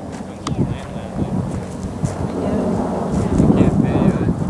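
Wind buffeting the microphone in irregular low rumbles, with people's voices in the background.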